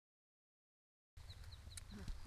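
Silence for about the first second, then faint outdoor ambience: a low rumble of wind on the microphone and a few short, high bird chirps.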